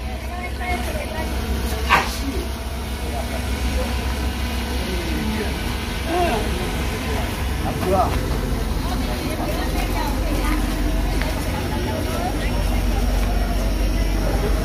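Indistinct talk of several people in the background over a steady low rumble, with one sharp knock about two seconds in.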